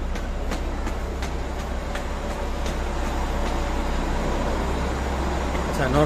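Footsteps climbing stone stairs at a steady pace, about two to three steps a second, over a steady low rumble of a busy rail station hall.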